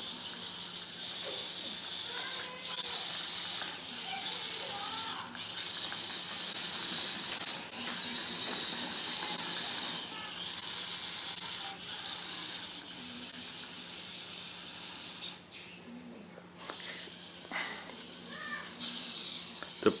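Small electric drive motors and mecanum wheels of a rover whirring on a tile floor in stretches of several seconds, stopping and starting again as it is steered, with a faint steady hum underneath.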